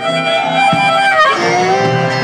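Blues harmonica playing a fill of held notes between sung lines, over acoustic guitar accompaniment.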